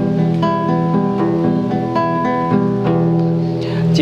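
Classical guitar with an E minor chord fretted, the thumb and ring finger plucking two strings together: sixth with fourth, fifth with third, fourth with second, third with first, then back down. The two-note plucks come steadily, two or three a second, each left to ring into the next.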